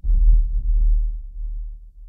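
A sudden, loud, very deep boom that starts out of silence and dies away over the next two to three seconds.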